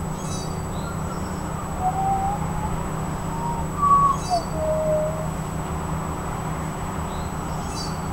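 Birds chirping and whistling outdoors, with three short high chirps spaced about four seconds apart and a few whistled notes in between, over a steady low hum of distant traffic.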